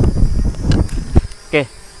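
Buzzing whine of a small Visuo Zen Mini quadcopter's propellers hovering overhead, wavering in pitch as the drone rocks in strong wind. Wind rumbles on the microphone and dies down about a second and a half in.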